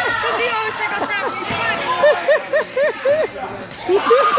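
Basketball shoes squeaking on the gym's court floor as the players run and cut, a quick string of short, high squeaks that comes thickest in the second half.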